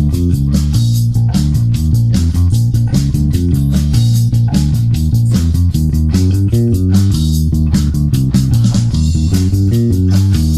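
Electric bass played fingerstyle: a busy eighth-note line over E♭ and B♭ chords with slides between notes, over a drum-kit track with steady, evenly spaced hits.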